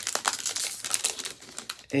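Foil wrapper of a Topps Series 2 baseball card pack crinkling as it is pulled open by hand. A dense run of crackles thins out in the second half.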